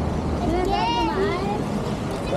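A high-pitched voice calls out briefly for about a second, starting half a second in, with no clear words. A steady low rumble runs under it.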